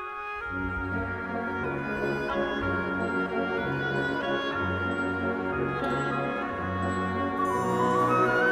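Concert wind band playing a slow passage of sustained chords, with clarinets, flutes and brass over bass notes that move about once a second, in a large church. The full band comes in just after the start and swells slightly toward the end.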